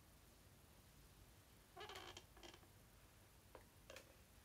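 Near silence, broken by two brief faint squeaks about halfway through and two small clicks near the end, from a pen drawing on paper.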